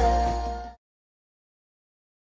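Live soca band music with heavy bass, cut off abruptly under a second in, then digital silence.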